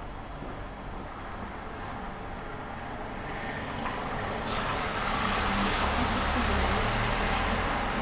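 A low rumble with a hiss over it, growing louder about four seconds in and staying up.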